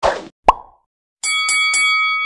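Sound effects for a countdown title card. A short falling swoosh opens, and a sharp pop comes about half a second in. After a brief silence, a bright chime of several steady tones with three quick taps rings for about a second.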